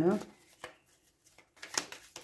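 Playing cards being handled off-camera: a few short, sharp rustles and snaps of card stock, the loudest a little before the end, as a card is drawn from the deck.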